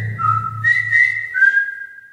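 Closing music: a few long whistled notes stepping between higher and lower pitches, over a low held tone that fades away toward the end.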